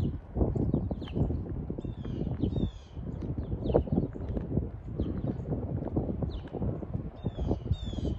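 Songbirds chirping, with repeated short high chirps that slide downward, over the low thudding and rumble of walking footsteps and the phone being carried.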